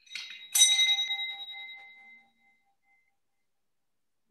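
A small bell struck once, after a lighter first touch, ringing with several clear tones that die away within about two seconds. It marks the start of a time of silent reflection.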